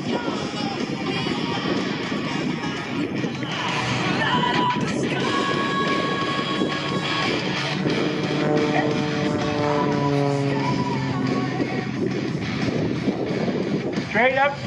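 Music with guitar playing, held notes changing pitch through the middle, over a dense steady wash of noise.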